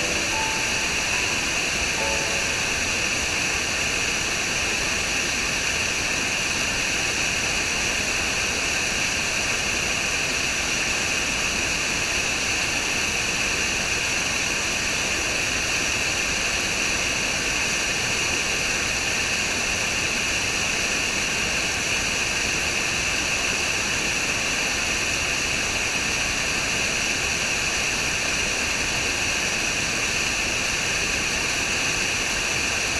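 Small waterfall cascading over rocks into a pool: a steady, unbroken rush of water. A few soft musical notes fade out in the first couple of seconds.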